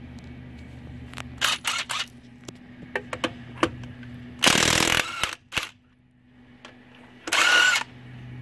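Porter-Cable 20V ½-inch cordless impact wrench hammering on a wheel's lug nut in short trigger pulls: a few quick bursts near the start, then two louder runs of about half a second, one about halfway through and one near the end, with scattered clicks of handling in between.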